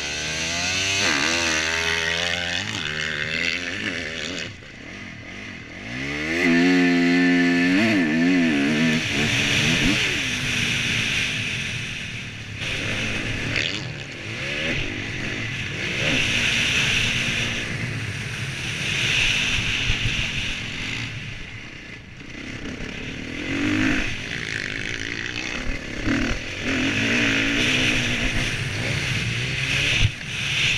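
Motocross bike engine revving and accelerating as it is ridden along a dirt track, climbing hard in pitch about six to eight seconds in after a brief drop in throttle. The engine then runs on, rising and easing with the track, under recurring bursts of rushing hiss.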